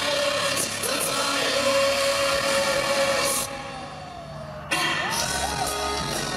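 Live rock band playing loud amplified music in a large hall, with a held, wavering sung line over the band. About three and a half seconds in the band drops to a quieter passage with one sliding note, then crashes back in at full volume a second later.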